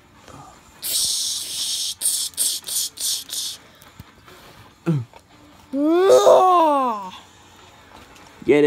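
A person making mouth sound effects for a toy lightsaber fight: a long hiss, then about five short hissing bursts. A few seconds later comes a drawn-out voiced sound that rises and then falls in pitch.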